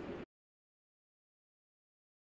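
Digital silence: the audio cuts to nothing about a quarter second in, after a brief faint tail of room noise.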